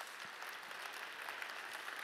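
Conference audience applauding steadily: many hands clapping at once.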